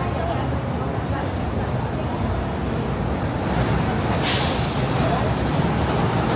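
Steady low rumble of road traffic, with snatches of passers-by's voices. About four seconds in there is a sharp hiss lasting about half a second.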